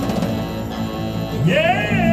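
A live band plays a slow song. About a second and a half in, a male voice swoops up from low into a long, high held note.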